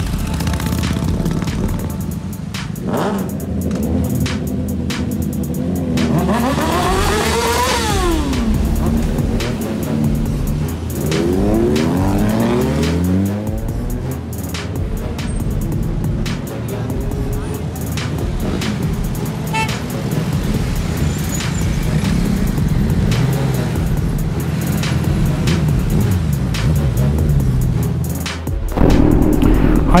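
A hip-hop beat plays throughout over the sound of sport motorcycles: one engine revs up and back down about six seconds in, and another engine sound slides down in pitch a few seconds later.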